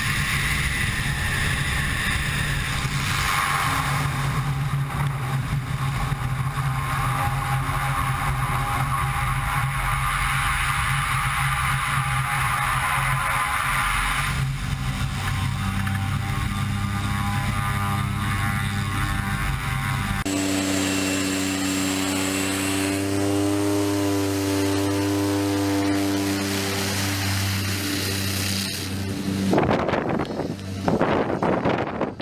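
Single-engine propeller plane's engine and propeller droning, with wind rushing over a wing-mounted camera, through landing and rollout on a grass airstrip. The engine note shifts a few times and settles into a lower, steadier hum about two-thirds of the way through as the power comes off.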